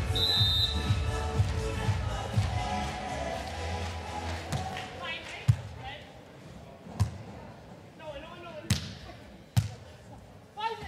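Broadcast music for the first few seconds, then a beach volleyball rally: the ball is struck by hands four times, about a second to a second and a half apart, with short shouts from players between the hits.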